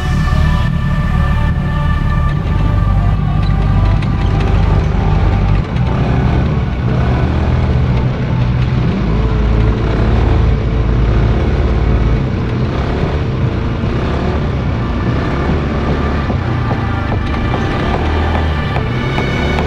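Background music over the Polaris RZR 170's small engine running, with rumble from the ride underneath.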